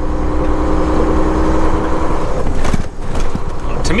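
Steady engine drone and road noise heard inside the cab of a diesel semi-truck tractor driving without a trailer. A steady hum stops a little after two seconds in, and a few brief knocks come just before three seconds.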